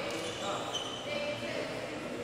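A basketball bouncing on a hardwood gym floor, echoing in the hall, with short high squeaks and voices in the background.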